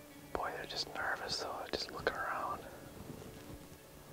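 A man whispering for about two seconds, starting about half a second in, with a few sharp clicks among the whispered words.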